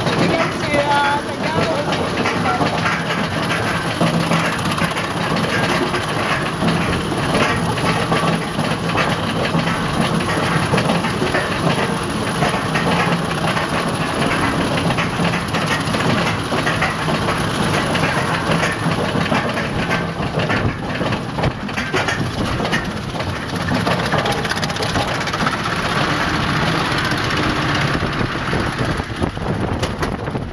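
Mine-train roller coaster climbing its lift hill: a continuous, dense clatter of the lift mechanism and wheels on the track, with a low hum underneath.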